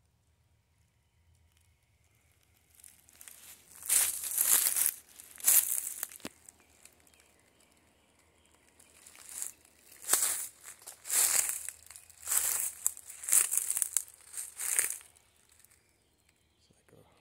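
Footsteps crunching through dry leaf litter and pine needles, in two spells of several steps with a short pause between them, after a quiet start.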